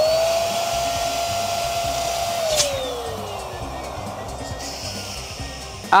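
Electric balloon inflator running, blowing up two red latex balloons at once: a steady motor whine with a rush of air. About two and a half seconds in there is a click, and the motor then winds down with falling pitch.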